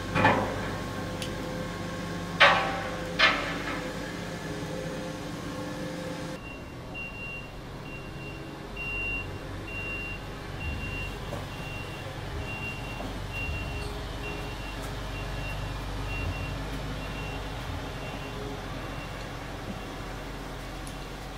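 Three sharp knocks with a ringing tail in the first few seconds. Then a low street rumble, over which a truck's reversing alarm beeps steadily, one high beep a little under a second apart, and stops near the end.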